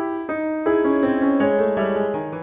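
Background piano music: slow, held notes and chords that change about two-thirds of a second in and again shortly after.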